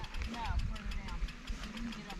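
Mountain bike rolling across a grass pasture, heard as a steady, uneven low rumble of wind and riding noise on the handlebar camera's microphone, with a faint distant voice about half a second in.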